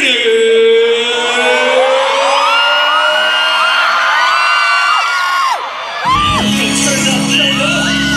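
A singer holds one long, slowly rising note through a microphone while a large arena crowd screams and whoops. About six seconds in, loud electronic backing music with a heavy bass beat kicks in.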